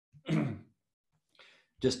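A man clears his throat once, a short vocal sound falling in pitch, then takes a faint breath in.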